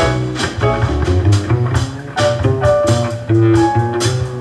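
Instrumental jazz trio break: an upright bass plucking a run of separate notes, with drum-kit cymbals and keyboard behind it.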